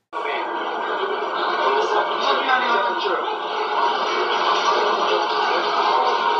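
Old camcorder tape audio of indistinct conversation, with the words barely audible, under a steady haze of food-court crowd noise.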